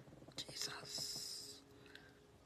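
A woman whispering a prayer softly, starting about half a second in and lasting about a second.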